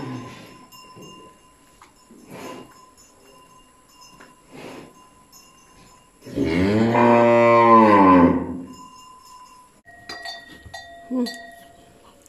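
A cow mooing once, a single loud, low call of about two seconds that rises and then falls in pitch, about six seconds in. Faint knocks and rustles of the cattle moving come before and after it.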